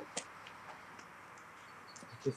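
Quiet outdoor background with a few faint, sharp ticks; the clearest comes just after the start.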